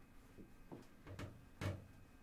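A man's soft, breathy chuckle in a quiet small room: a few short puffs of breath, the loudest about one and a half seconds in.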